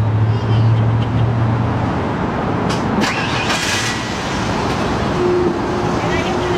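Motor vehicle and road traffic noise: a steady low hum that stops about two seconds in, over continuous traffic noise, with a brief louder rush about three seconds in.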